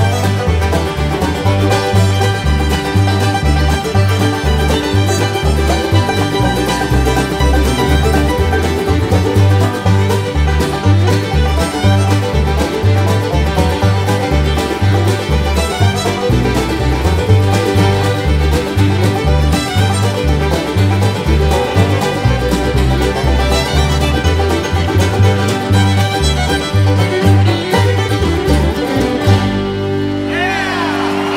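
Bluegrass fiddle and five-string banjo playing a fast-picked instrumental tune together, with guitar and a moving bass line behind them. The band stops together just before the end.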